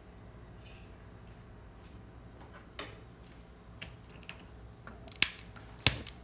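Spark igniter clicking to light a gas stove burner: a few faint clicks, then two sharp loud clicks near the end as the flame catches.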